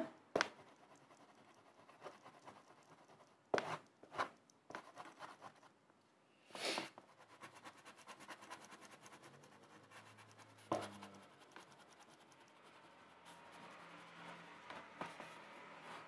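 Oil pastel being rubbed and blended on paper with a small grey blending pad: a faint, scratchy rubbing, broken by a few short sharp clicks and one louder half-second rush about halfway through.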